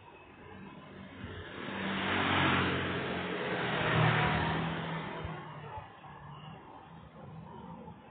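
A motor scooter passing close by: its engine and tyre noise swells over a couple of seconds, is loudest as it goes past, then fades away.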